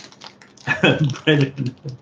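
A man laughing, starting under a second in, after a few faint clicks at the start.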